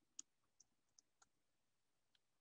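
Near silence with a few faint computer keyboard keystroke clicks, the first, about a fifth of a second in, the loudest.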